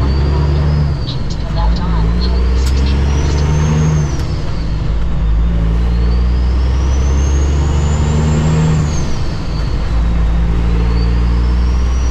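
Cummins ISX diesel of a 2008 Kenworth W900L, heard from inside the cab, pulling up through the gears. The engine note climbs and drops at each shift, and a high turbo whistle rises and falls with it about four times.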